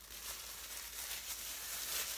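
Faint rustling of a clear plastic bag and handling of a metal water bottle, soft and uneven.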